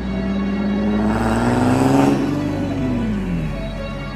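A car engine revving up and easing off, its pitch rising to a peak about two seconds in and then falling away, with background music playing throughout.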